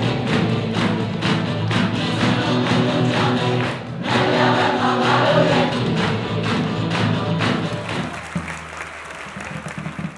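Acoustic guitars strummed while a group sings along, fading out over the last couple of seconds.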